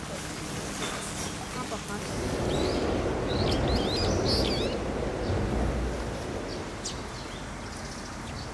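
Small birds chirping in a quick cluster of short calls about three to four seconds in, over a steady background murmur of voices.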